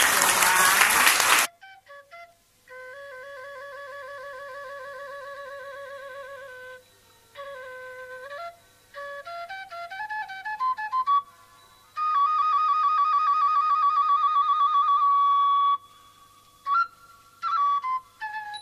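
Applause that cuts off suddenly about a second and a half in, then a solo flute melody: wavering held notes, a quick rising run of notes, and a long high note held with vibrato.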